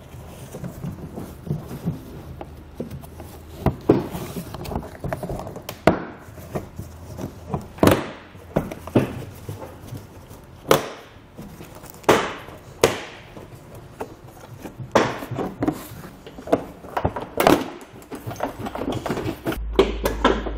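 A plastic rear bumper cover being pulled off a car by hand, its retaining clips snapping loose one after another: irregular sharp pops and knocks, with plastic creaking and rubbing between them.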